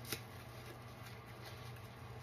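Soapy kitchen sponges squeezed and kneaded by hand in a basin of thick suds: soft wet crackling and squishing of the foam, with one sharp click just after the start.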